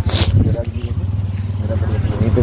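A motor vehicle's engine running steadily at low revs, with a short rustling scrape about a second in.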